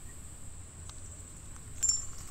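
Quiet outdoor creek ambience: a steady high-pitched insect drone over a faint low rumble, with a few faint ticks near the end.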